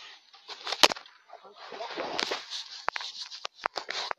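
Handling noise from the recording device being moved: a loud sharp knock about a second in, a rustle, then a quick string of small knocks and clicks near the end.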